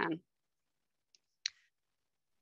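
A single short, sharp click about a second and a half in, with a fainter tick just before it, in otherwise dead silence after the last word of speech.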